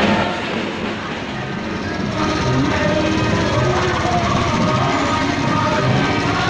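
Music playing over vehicle engine noise and scattered voices in a street procession.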